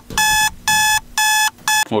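Electronic alarm beeper sounding a rapid string of buzzy, high, steady-pitched beeps, about two a second, the last one shorter.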